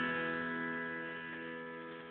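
An Epiphone acoustic guitar's last strummed chord ringing out at the end of the song, its held notes fading steadily away.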